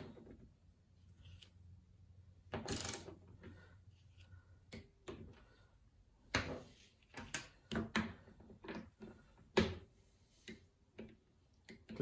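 Hand wrench on the fuel pump module's flange bolts, ratcheting and clicking in scattered short bursts as the bolts are brought to 33 inch-pounds. The clicks come irregularly and grow more frequent in the second half.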